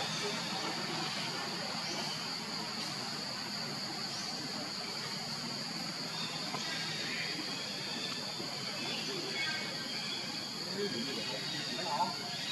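Steady outdoor ambience with an even insect buzz held at one high pitch; no calls from the monkeys.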